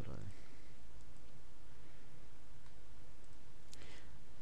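A single computer mouse click near the end, over a steady low hum and hiss.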